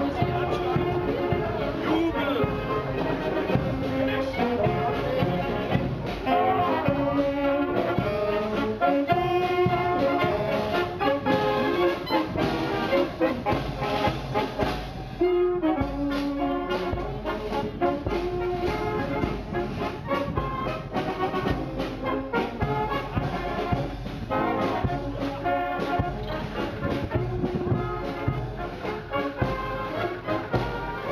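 Marching band of saxophones and trumpets playing a tune as it walks past, with a brief break in the melody about halfway through.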